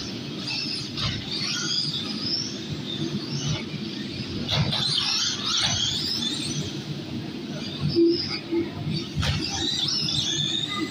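1/10-scale electric RC off-road cars running on an indoor carpet track: high-pitched motor whine rising and falling as they speed up and slow down, with a few sharp knocks.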